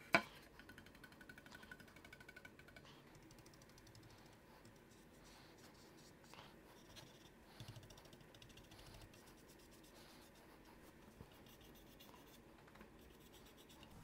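Faint dabbing and scratching of a small paint brush applying chalk paint to a wooden paddle shaft, after one sharp click right at the start; otherwise near silence.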